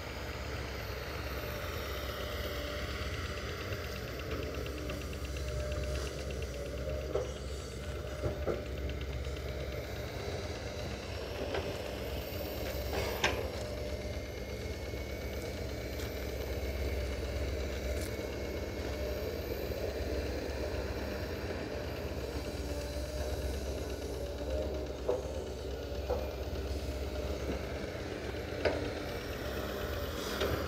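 Hydraulic excavator's diesel engine running steadily under load as it digs, a low continuous drone with a few sharp knocks scattered through.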